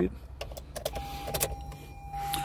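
A few light clicks as a key goes into a 2018 Toyota Highlander's ignition. About a second in, a steady single-pitched electronic warning tone starts and holds: the car's key-in-ignition reminder.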